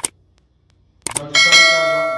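Subscribe-button animation sound effect: a couple of quick mouse clicks about a second in, then a bright bell ding that rings on and fades slowly.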